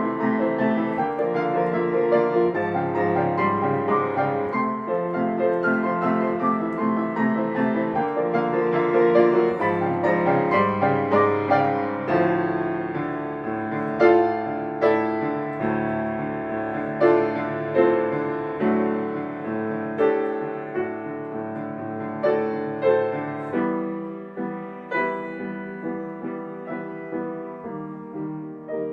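Solo grand piano playing a quiet classical piece: fast, evenly repeating broken-chord figures at first, then slower, separately struck chords that die away, growing softer near the end.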